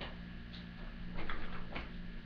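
Playing cards being handled on the table: about four light, irregularly spaced clicks over a low steady hum.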